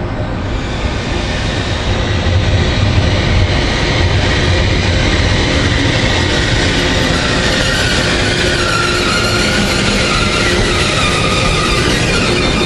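FS E.402B electric locomotive hauling an Intercity train into a station, its running noise growing louder over the first few seconds as it approaches and then holding steady. A high whine sounds over it and falls slightly in pitch in the last few seconds.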